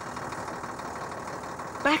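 Lorry engine running steadily, a cartoon sound effect.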